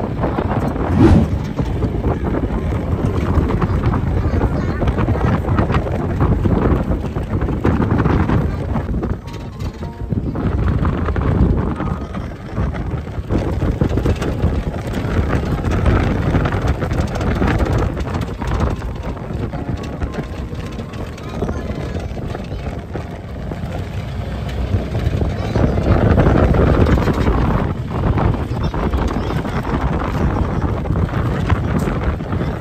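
Wind buffeting the microphone in a moving open-sided safari jeep, over the vehicle's running noise; the rush swells and eases several times.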